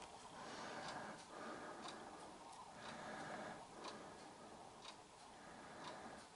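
Faint, regular ticking about once a second over quiet background noise.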